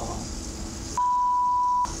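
A censor bleep: one steady pure tone lasting just under a second, starting about a second in. The room sound drops out while it plays, as when a spoken word is bleeped out.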